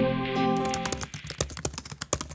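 A computer-keyboard typing sound effect, a rapid run of key clicks, while the last held chord of a music sting fades out.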